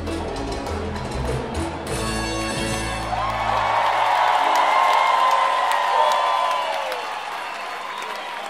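Live salsa band playing the closing bars of a song: the bass and percussion stop about three and a half seconds in, while a long held high note rings on for a few seconds and the crowd cheers and applauds.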